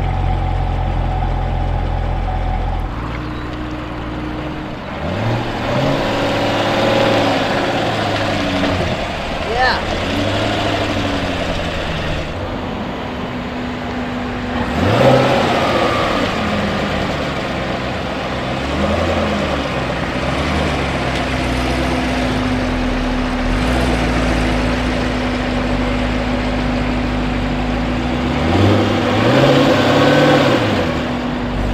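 2016 Chevrolet Corvette Stingray's 6.2-litre V8 idling and being revved several times, each rev rising and falling in pitch. The strongest revs come about halfway through and near the end.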